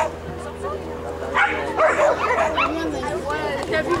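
A Pyrenean Shepherd dog barking in quick, high yips as it runs. The yips come thickest about one and a half to two and a half seconds in, with a person's voice mixed in.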